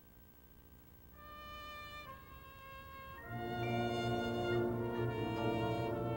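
Drum and bugle corps horn line playing G bugles: after a quiet second, sustained bugle notes come in, and about three seconds in the full brass section enters much louder with a rich held chord.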